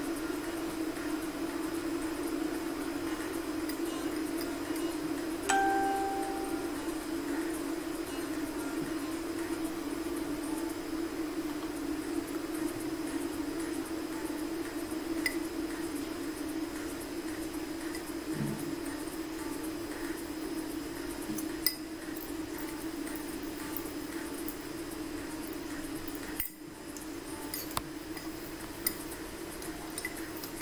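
A metal teaspoon clinking against small ceramic ramekins of sprinkles, with one clear ringing clink about five and a half seconds in and a few faint taps after it, over a steady low hum.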